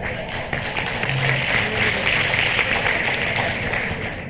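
Large audience applauding a line of a live speech, a dense steady clatter of many hands, heard from an old vinyl LP recording.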